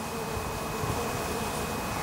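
Honeybees buzzing close by: a steady hum whose pitch wavers slightly.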